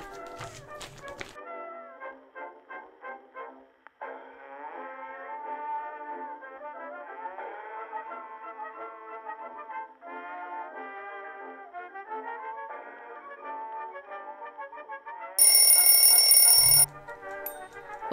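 Mechanical dial kitchen timer's bell ringing loudly for about a second and a half near the end, over background music: the five-minute felting time is up.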